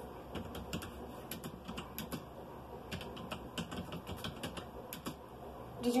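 Typing on a computer keyboard: irregular, quick key clicks, several a second.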